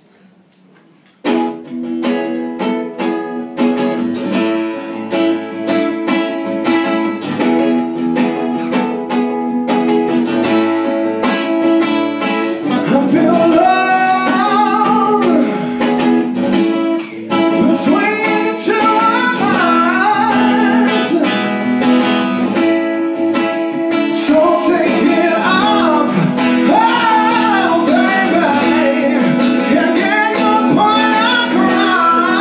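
Acoustic guitar starts strumming chords about a second in, and a singer's voice comes in over it about twelve seconds later, singing a song with the guitar accompanying.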